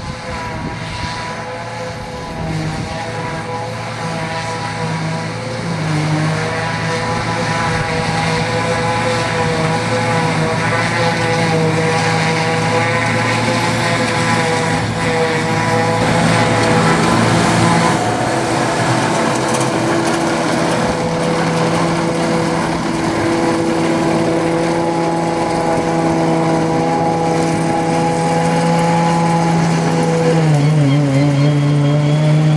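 Massey Ferguson 6480 tractor running under load, driving a trailed Claas Jaguar 75 forage harvester through the PTO as it picks up and chops grass for silage. A steady engine and machine drone with a whine above it, growing somewhat louder about six seconds in.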